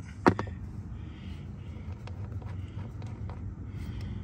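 A single sharp click just after the start, then a few faint light ticks over a steady low hum: small handling noises while a truck's door check is being taken off.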